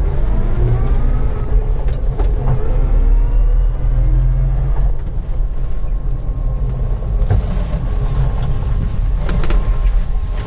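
Cab noise of an electric-converted Puch Pinzgauer on the move: a steady low rumble from the running gear, with a transmission whine gliding up and down in pitch through the first half. The transmission is the main noise, the electric motor being almost inaudible. A few rattles come near the end.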